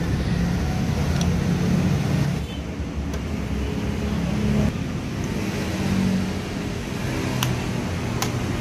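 Steady low engine rumble of motor vehicles, with a few faint light clicks.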